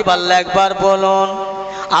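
A man's voice chanting into a microphone, holding one long sung note in the melodic intoning style of a Bengali waz sermon. The note breaks off near the end.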